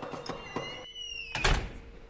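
A high squeak that glides slightly up and then down for about a second, ending in a heavy thud about a second and a half in.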